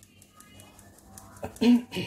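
A metal mesh sieve of icing sugar being tapped by hand over a glass bowl, making quick light ticks, with two louder knocks near the end.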